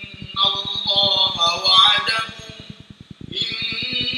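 A man's voice chanting Quranic recitation in Arabic in long melodic phrases, amplified through a microphone. One phrase ends a little before three seconds in, and after a short pause the next phrase begins.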